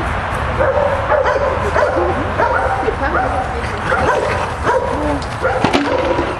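Dogs yipping and whining as they play, in many short high calls, some sliding in pitch, over a steady low rumble.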